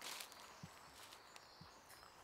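Near silence: faint outdoor ambience, with two soft, short low thumps about a second apart.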